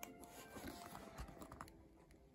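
Near silence with faint light taps and rustles of a hand handling a hardback picture book, dying away near the end.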